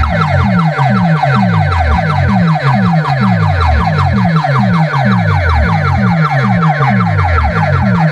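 A DJ sound-system speaker stack playing a loud electronic, siren-like track. Rapid falling pitch sweeps repeat over deep falling bass sweeps about three times a second.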